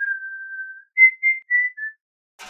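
A person whistling a tune: one long held note, then four short, higher notes that step down in pitch.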